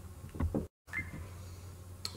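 Quiet room tone with a steady low hum, broken a little under a second in by a brief dropout to dead silence where the video is cut.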